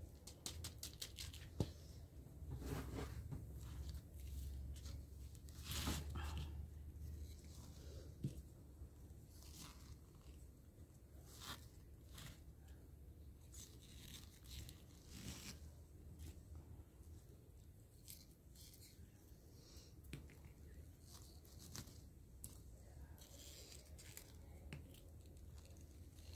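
Faint rustling and scattered light clicks of hands pressing succulent rosettes into potting soil in a small pot, over a low steady hum.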